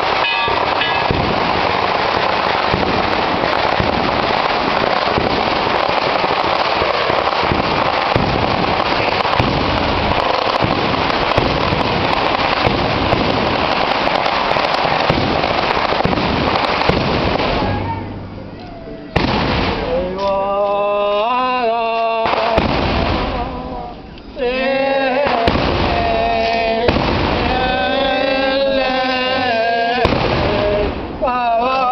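A long string of firecrackers crackling continuously in a dense, unbroken rattle for about eighteen seconds. Then men's voices chant a liturgical prayer in several phrases.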